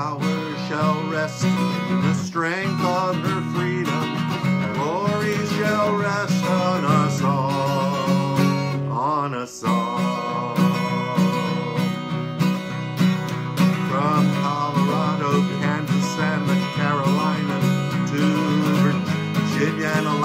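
Acoustic guitar, capoed, strummed steadily, with a man singing over it, his voice wavering in pitch; the music drops out briefly about halfway through.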